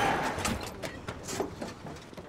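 The tail of a stunt crash: a loud crash dies away over about a second, followed by scattered light clatters and knocks.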